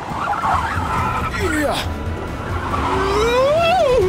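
Cartoon chase sound effects: a vehicle engine rumbles low and tyres skid. Near the end, a loud pitched sound rises, then falls.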